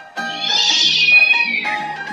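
A long, high cartoon cat meow that rises and then falls in pitch, over background music.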